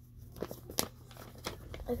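Sheets of paper being handled, rustling and crinkling, with a few short crackles.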